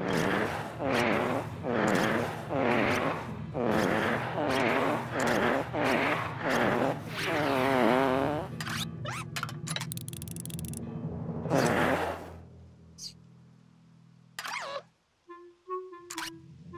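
Cartoon soundtrack music and sound effects. A wobbly, warbling tone repeats in short pulses, about every 0.7 s, over a low steady drone. The pulses thin out after about eight seconds into fainter, sparser sounds and a few isolated notes.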